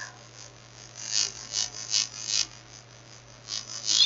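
Faint, irregular soft clicks from a computer mouse scroll wheel as a web page is scrolled, over a steady low electrical hum.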